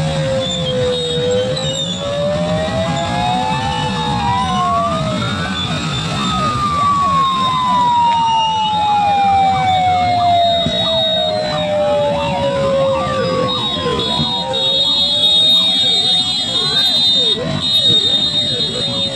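A siren wailing, its pitch rising and falling slowly over several seconds at a time, over the steady din of many motorcycle engines and a shouting crowd.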